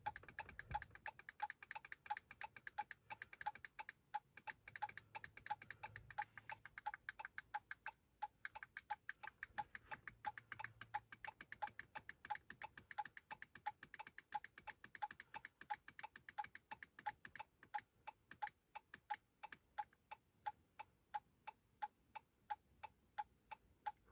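Faint, steady ticking of the Chrysler 200's hazard flasher, an even tick-tock at about three ticks a second.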